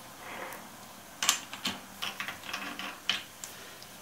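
Steel chuck key working the jaw screws of a four-jaw lathe chuck as two jaws are loosened: a series of sharp metallic clicks and clinks, the loudest about a second in.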